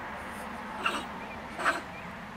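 Stone marten (beech marten) giving two short scolding calls, a little under a second in and near the end: the agitated, bad-tempered calls of a disturbed marten.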